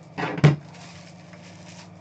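Desk handling noise during a trading-card break: a brief rustle and a sharp knock about half a second in, as things are set down on the desk, over a steady low hum.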